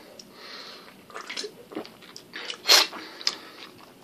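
Mouth sounds of someone drinking from a can: a few soft sipping, swallowing and lip-smacking clicks, with one louder, noisier sound a little under three seconds in.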